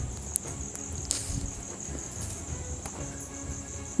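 Crickets chirring steadily in a fast, high-pitched pulse, with a low rumble from the wood fire under the covered pot and a few faint clicks.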